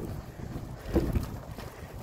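Wind buffeting a phone's microphone: an uneven low rumble. A short vocal sound, a breath or a half-laugh, comes about a second in.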